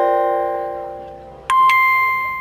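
Music track with slow struck notes: a held chord rings and fades away, then a new, higher note sounds about one and a half seconds in.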